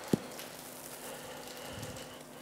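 Quiet room tone with a faint steady hum, broken by one short, sharp knock just after the start.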